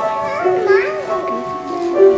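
High school girls' choir singing held chords with piano accompaniment, with a voice gliding up and down briefly in the first second.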